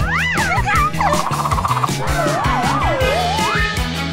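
Children's background music with a steady beat, overlaid with cartoon sound effects: a quick whistle-like glide up and down near the start, a fast warbling trill about a second in, then a wavy sliding tone that swoops up and down and ends on a rise.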